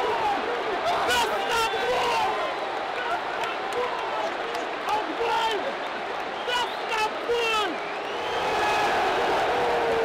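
Football stadium crowd: many voices shouting and chanting at once over a steady crowd roar, with a few sharp claps scattered through and a held chanted note near the end.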